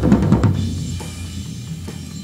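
Playback of a drum recording's floor tom microphone track: a few quick strikes, then the tom's low ring slowly fading. The cymbal bleed in the track has been turned down by spectral debleed processing at 50%.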